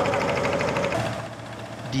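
Motorboat engine running with a fast, even knocking beat, loud at first and dropping away after about a second.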